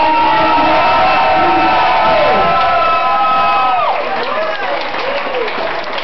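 Crowd cheering and screaming for a prize winner. Several long, held, high-pitched screams trail off with a falling pitch about four seconds in, then give way to shorter shouts and chatter.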